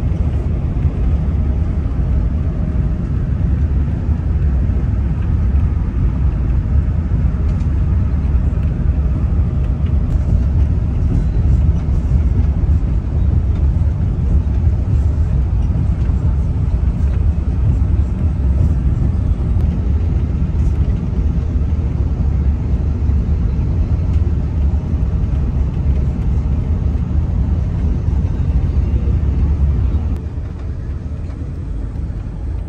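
Steady low rumble of road and engine noise heard inside a moving vehicle at highway speed.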